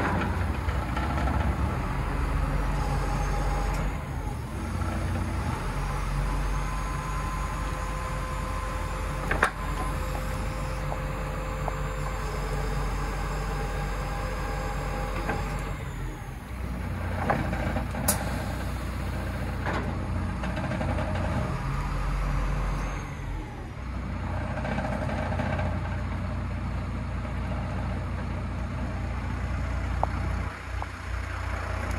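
Iveco Stralis garbage truck's diesel engine running while the Faun rear loader's hydraulics work the bin lifter, the steady drone shifting in level as the hydraulics load and unload. Two sharp metallic clicks are heard, one about a third of the way in and one past the middle.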